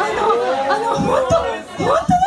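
Chatter: several young women's voices talking over one another.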